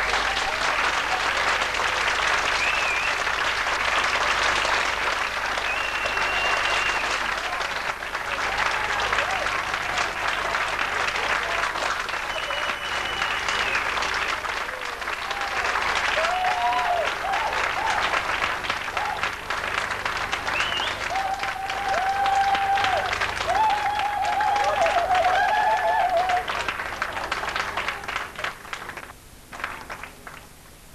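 A hall audience applauding, with dense clapping and a few voices calling out over it. The clapping dies away near the end.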